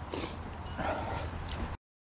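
A mountain biker breathing hard while pedalling up a steep climb in a high gear, over steady wind rumble on the handlebar camera. The sound cuts off abruptly near the end.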